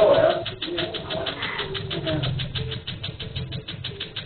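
Tattoo-removal laser firing: a rapid, steady train of sharp clicks, one for each pulse, as it treats a tattoo.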